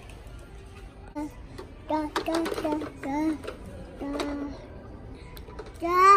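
A toddler babbling in short bursts of voice, with light clicks of a plastic toy truck being handled.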